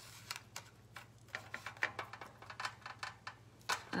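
Decoupage paper being handled and pressed down by hand: faint, irregular little crackles and taps, over a low steady hum.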